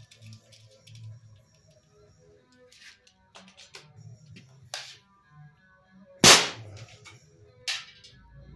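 Walther Reign PCP bullpup air rifle firing one shot through a chronograph about six seconds in: a single sharp crack, the loudest sound here, with smaller clicks before and after from handling the action. The shot comes as the air pressure sits just over 100 bar, where velocity is dropping. Faint music plays underneath.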